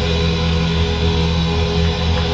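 Church praise-band music led by electric guitar, with chords held steadily.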